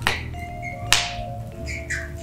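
A single sharp snap about a second in, over faint steady tones of quiet background music.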